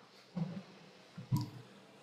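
Two brief soft clicks about a second apart, the second sharper.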